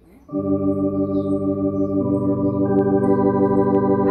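Organ playing a sustained chord on one of its preset registrations, starting about a third of a second in, with more notes joining about two seconds in.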